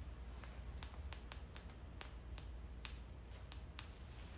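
Faint, irregular small clicks and taps, a few a second, from fingers handling the power cable's plug and connector at the front of a battery-heated vest, over a low steady hum.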